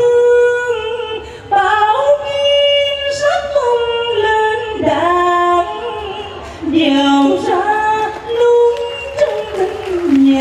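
A man singing into a microphone in a high, sweet female singing voice. He sings in phrases of long held notes that slide between pitches, with short breaks about one and a half and seven seconds in.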